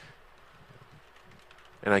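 Faint computer keyboard keystrokes over quiet room tone as a short shell command is typed and entered.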